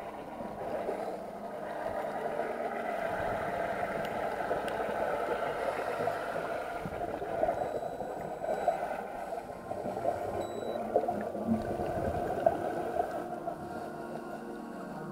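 Underwater noise picked up through an action camera's waterproof housing: a steady rushing, crackling hiss, with a few short louder knocks in the second half.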